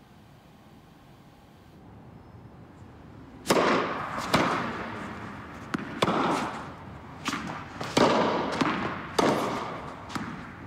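Tennis rally on an indoor court: sharp racket hits and ball bounces, about one a second, each echoing in the hall. They begin about a third of the way in, after a quiet stretch of room tone.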